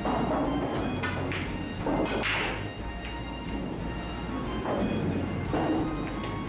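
A pool break shot: the cue ball smashes into the racked billiard balls with a sharp crack, then the balls clack against each other and knock off the cushions as they spread. Background music plays underneath.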